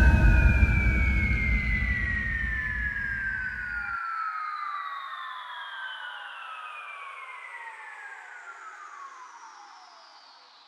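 Closing effect of an electronic dance remix after the beat has stopped: several synth tones glide slowly downward together while fading out. A low rumble under them cuts off suddenly about four seconds in.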